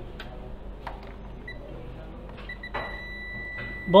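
Vulkan Lokator electronic refrigerant leak detector beeping, a thin high tone. Its spaced beeps quicken and then run into one continuous tone near the end, the alarm for a very small refrigerant leak at the fitting.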